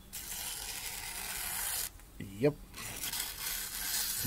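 Buck Iceman 864's hollow-ground clip-point blade slicing through a page of phone book paper with a dry, hissing rasp. There are two slicing strokes, one of about two seconds and a shorter one near the end. The factory edge cuts cleanly out of the box.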